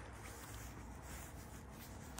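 Faint, steady background noise with no distinct sound event.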